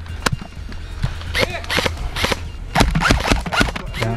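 Airsoft guns firing in a woodland skirmish: a single sharp snap, then a run of irregular snaps, some in quick succession, over a steady low background hum.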